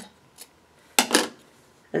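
Scissors cutting through quilting cotton: a faint click, then a short crisp snip about a second in as the blades close on the fabric.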